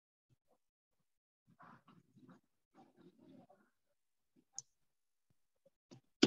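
Near silence on a video call line: faint, indistinct background sounds and a single click about four and a half seconds in.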